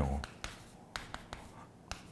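White chalk writing on a chalkboard: a string of short, light taps and scrapes as a word and an upward arrow are written.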